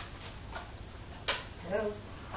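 Two sharp clicks about a second apart with a fainter one between them, then a brief murmured voice sound near the end.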